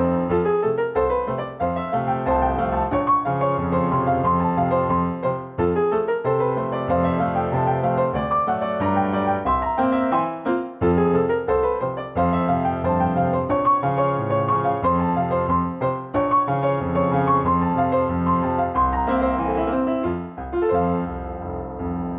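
Solo piano playing ballet-class accompaniment for a small-jump exercise, chords and melody on a steady beat.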